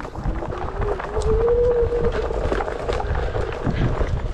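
Onewheel electric hub motor whining, its pitch rising as it speeds up, then holding before fading, over the rumble of the tyre on a dirt trail and wind on the microphone.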